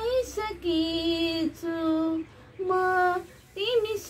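A woman singing solo with no accompaniment, in short phrases of long held notes with small bends in pitch and brief breaks between phrases.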